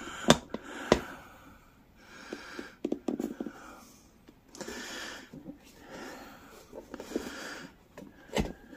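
Two sharp clicks of a screwdriver against the wheel rim near the start, then a man's heavy breathing in repeated swells as he pries a stiff garden cart tire bead over the rim.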